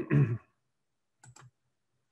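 A few quick, light clicks about a second in, from a computer being used to advance a presentation slide, after the tail end of a man's speech.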